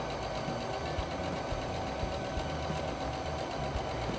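Singer Patchwork electronic sewing machine stitching a seam through layered cotton patchwork, running steadily at an even speed.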